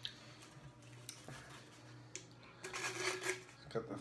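Knife cutting and scraping at the foil over a beer bottle's cap: scattered small clicks and scratchy scrapes, busier in the second half.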